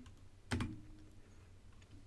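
A single computer-keyboard keystroke about half a second in, then a few faint key ticks: typing at a terminal command line.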